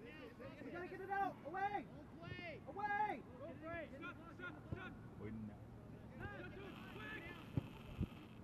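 Raised voices calling and shouting across an open soccer field, sounding distant and overlapping, with one sharp thump near the end.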